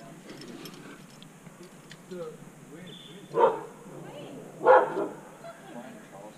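A dog barking twice, two short loud barks about three and a half and five seconds in.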